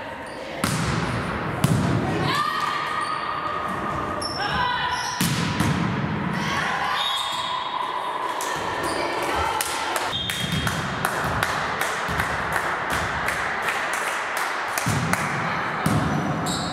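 Indoor volleyball being played in a sports hall: repeated sharp ball hits and thuds, with echo, and players' voices calling out during the rally.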